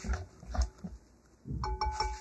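Wire whisk stirring thick, wet cheesecake batter in a glass bowl, with irregular squelching strokes. Near the end the whisk clinks against the glass and the bowl rings briefly.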